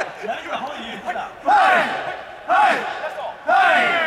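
A group of men shouting loud calls together in a steady rhythm, about one a second, with three loud shouts in the second half, over softer chatter.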